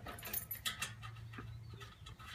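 Light metallic clicks and rattles of grill hardware being handled and fitted during assembly, several in the first second, over a faint low hum.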